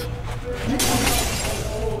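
A dense hissing rush of noise starts abruptly a little under a second in and keeps on, over a low steady hum.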